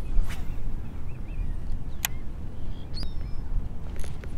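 Steady low wind rumble on the microphone over open water, with a few faint bird calls and a single sharp click about two seconds in.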